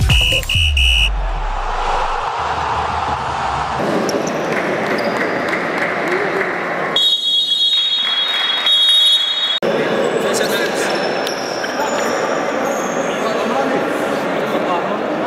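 An electronic logo jingle ends with three short high beeps and a falling low tone. It gives way to the echoing ambience of an indoor futsal hall, with voices talking. Near the middle a steady high-pitched tone sounds for about two and a half seconds.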